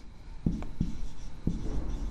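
Marker writing on a whiteboard: a few short strokes and taps of the tip as letters are written.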